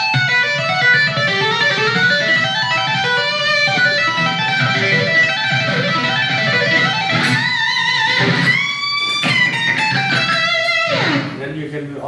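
ESP electric guitar playing a fast lead run of rapid legato and two-handed tapped notes stepping through a scale. Near the end come held notes with vibrato and a bend, then a long slide down the neck about eleven seconds in, after which the playing goes on more quietly.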